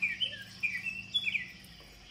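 A quick run of short, high chirps, several with a quick falling glide, over a faint steady hum.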